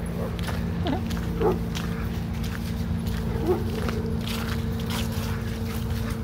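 Dogs playing rough, giving a few short yelps and growls about a second in, at a second and a half and again at three and a half seconds, over a steady low hum.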